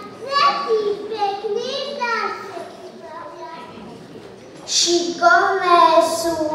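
Young children's voices reciting lines. The voices fall away for a couple of seconds in the middle and come back louder near the end.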